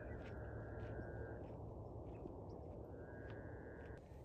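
An owl calling with a long, even, high trill that breaks off about a second and a half in and starts again about three seconds in, over faint evening outdoor hiss.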